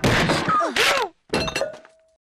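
Cartoon fight sound effects: several quick bursts of crashing, thudding blows mixed with short cries and groans, the last burst carrying a brief ringing note.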